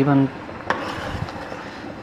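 A metal spoon stirring thick kheer in a metal cooking pot, with a couple of light clinks against the pot over a steady hiss.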